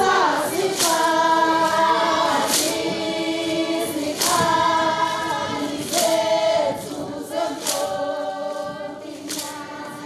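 A group of voices singing together a cappella in harmony, long held chords that change every second or two, with a few sharp percussive hits between phrases.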